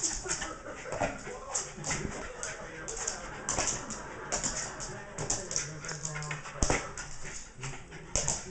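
Small dog panting quickly and whining while it jumps up in play, with short clicks and one sharp knock about two-thirds of the way through.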